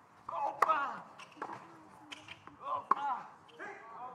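Tennis racket strikes on the ball: a sharp serve hit about half a second in, fainter hits and bounces, then another loud hit about three seconds in. Each of the loud hits comes with a short vocal sound from a player.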